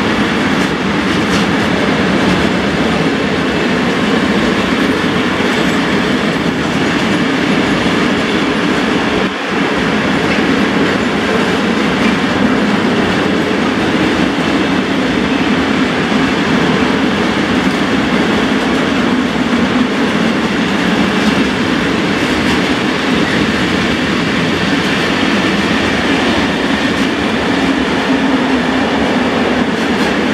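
Loaded coal gondola wagons of a long freight train rolling past steadily on the track, their wheels and bodies making a continuous dense rolling noise, with a brief dip about nine seconds in.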